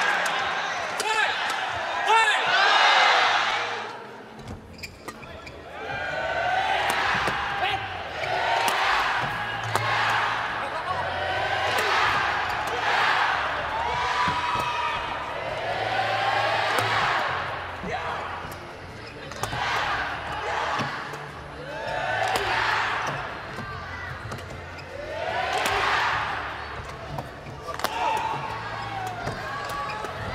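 Badminton rally in an arena: sharp hits of rackets on the shuttlecock, with the crowd's voices swelling and falling back every couple of seconds as the exchange goes on.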